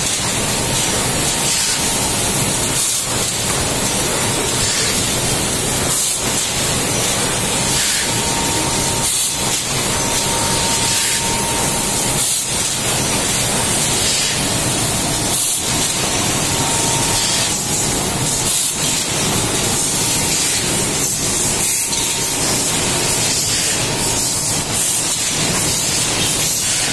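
Egg tray pulp-molding machine running: a loud, steady hiss of air with a short dip in the noise about every three seconds as the machine cycles, and a faint steady whine at times.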